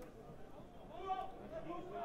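Faint, distant voices calling and talking in the open air of a football ground, under a low background hiss, a little louder about a second in.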